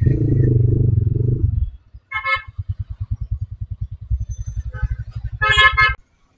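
TVS Raider 125's single-cylinder engine running under throttle for about a second and a half, then settling to an idle with an even low beat as the bike slows to a stop. A vehicle horn honks briefly about two seconds in and again, longer, near the end.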